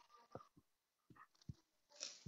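Near silence, with a few faint, brief sounds and soft low knocks scattered through it.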